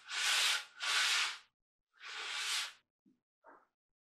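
Coarse 60-grit sandpaper rubbed back and forth by hand in the barrel channel of a wooden rifle stock: three long strokes in the first three seconds, then a couple of faint small sounds. The wood is being taken down so that the barrel sits flat in the channel.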